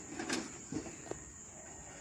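Faint taps and knocks as a plastic stingless-bee hive box half is handled over a stainless steel bowl, over a steady high-pitched trill typical of a cricket.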